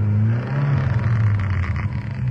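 Car engine running with a steady low drone that rises a little in pitch about half a second in.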